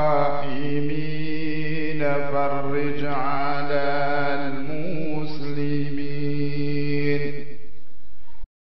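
A voice chanting a slow, melodic religious invocation in long held notes over a steady low drone.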